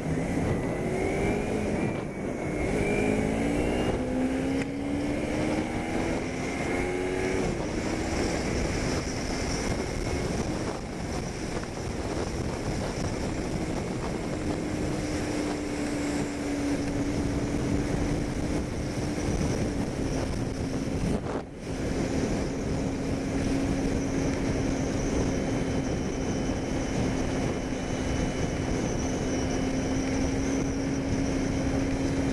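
Kawasaki Ninja 250R parallel-twin engine pulling away, its note climbing in pitch several times over the first seconds as it goes up through the gears, then holding a steady note at cruising speed, under loud wind and road noise. The sound dips briefly about two-thirds of the way through.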